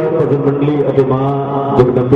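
A man's voice over a microphone and loudspeaker, drawn out in long, level sing-song notes like a chant, with a couple of short clicks.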